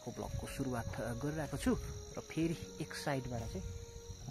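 Steady high-pitched insect drone, with a man talking over it.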